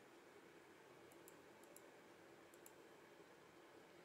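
Near silence, with a few faint, short computer mouse clicks in the middle.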